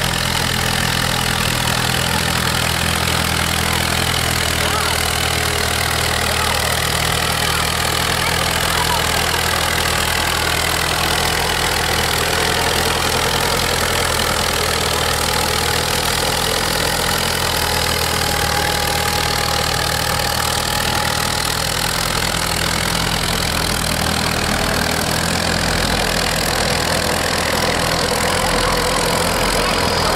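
Oliver 80 antique tractor engine running steadily at low, even revs under load as it pulls a weight-transfer sled.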